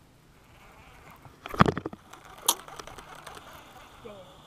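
Baitcasting reel and rod being handled: a quick rattle of clicks with a knock about one and a half seconds in, then a single sharp click about a second later.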